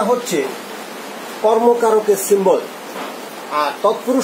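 A man speaking in short phrases, with pauses filled by a steady background hiss.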